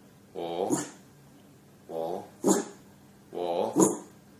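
Jack Russell terrier barking three times, about a second and a half apart. Each sharp bark comes right after a quieter, slightly falling 'woo' call.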